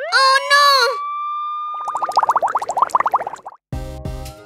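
A cartoon character's wordless cry, then cartoon sound effects: a held whistle-like tone and a fast warbling run. Background music comes in near the end.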